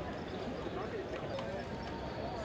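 Indistinct crowd chatter of a busy exhibition hall, with a few scattered light clicks or taps.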